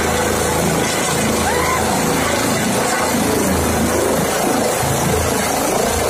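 Light twin-turbine helicopter (Eurocopter EC135 type) hovering low before touchdown: loud, steady rotor wash and turbine noise. Crowd voices shout over it, more in the second half.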